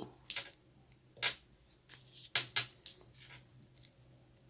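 Metal knitting needles tapping and scraping against each other as stitches are worked, with about six short, irregular clicks.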